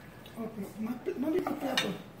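Kitchen knife and dishes clinking while meat is sliced on a wooden cutting board, with one sharp clink near the end, over indistinct voices.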